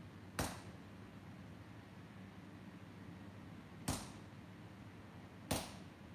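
Hand hammer striking hot axe steel on an anvil during forging: three sharp blows, unevenly spaced, each with a short ring, over a steady low hum.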